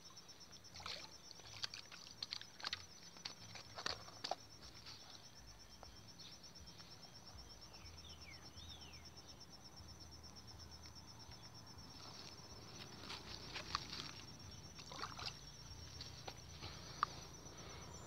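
Steady, high, rapidly pulsing insect trill like a cricket's, with scattered short knocks and splashes of water as a hooked traíra is fought at the bank and lifted out, clustered in the first few seconds and again near the end.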